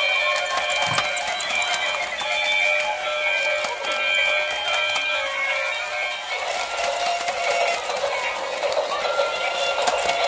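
Tinny electronic tunes played through the small speakers of battery-operated light-up walking toys, with a steady patter of small clicks. The melody changes about six seconds in.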